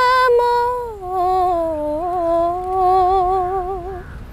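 A young woman's solo voice singing a Malayalam song without accompaniment. She holds a long steady note, slides down in pitch about a second in, then sustains a low note that wavers with small ornaments until just before the end.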